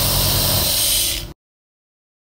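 Compressor nebulizer running: a steady motor hum under a strong hiss of air and mist. It cuts off abruptly just over a second in, leaving dead silence.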